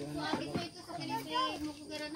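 Indistinct voices of a small child and adults, the child babbling, with no clear words.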